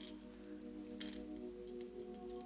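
Soft background music with steady held notes; about a second in, a sharp clack of letter tiles being set down on a small plate, and a fainter click near the end.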